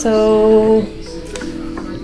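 Background music: a song with guitar, a held note loud in the first second, then a softer stretch.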